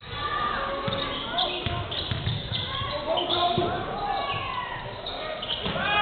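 Basketball bouncing on a hardwood gym floor during play: a few irregular thumps, with voices in a large hall.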